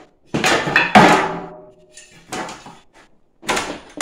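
A flat scraper blade scraping across a thin metal stock pot lid to work off a label that won't come off, in three bouts, the loudest about a second in, with the lid ringing briefly after it.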